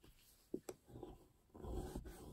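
Bone folder scoring a line in cardstock along a ruler: faint, with a couple of light ticks about half a second in, then a soft scrape near the end.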